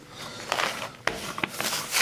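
Newspaper rustling and crinkling as gloved hands handle it around an inked printing plate, in a few short scrapes that turn into steadier rustling in the second half.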